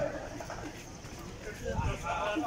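Indistinct voices of people talking, with footsteps on a station footbridge.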